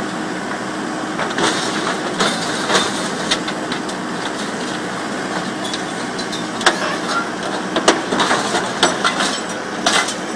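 Komatsu excavator's engine and hydraulics running steadily while an MC430R hydraulic scrap shear works through a pile of scrap steel. Scattered sharp metal clanks throughout, the loudest two about a second apart, near seven and eight seconds in.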